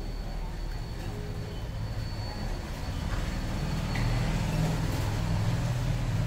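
Low engine rumble of a motor vehicle, growing steadily louder.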